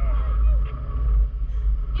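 Wind buffeting the microphone as a loud, steady low rumble, with a thin steady whistle above it and a faint voice briefly near the start.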